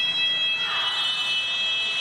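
Referee's whistle blown in one long, steady, shrill blast lasting about two seconds: the final whistle ending the futsal match.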